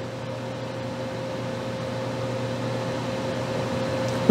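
Steady hum of running video equipment on the bench, with one constant mid-pitched tone over a low drone and an even hiss, growing slightly louder.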